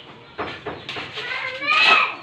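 Shovel scraping through a heap of cement mix in short strokes, then a short high-pitched call with a wavering, bending pitch near the end, louder than the scraping.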